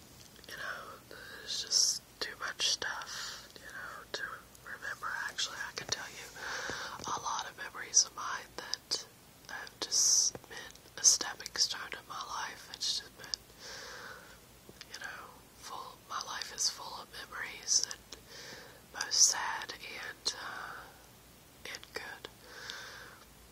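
One person whispering, talking steadily in a soft voice with crisp hissing consonants.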